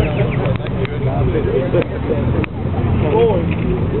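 A car engine idling with a low, steady rumble, with people's voices talking over it.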